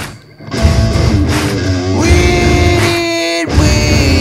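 Heavy metal band playing an instrumental stretch with guitar. The band stops for a moment just after the start, then comes back in with long held guitar notes, and the low end drops out briefly near the end.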